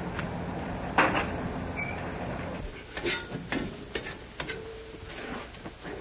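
A sharp knock about a second in, then four or five shorter knocks and clunks a little over two seconds later, over the steady hiss of an old film soundtrack.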